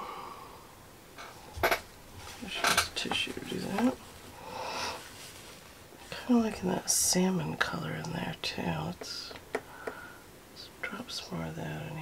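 Soft, half-whispered speech in a small room, with a few sharp clicks in the first few seconds.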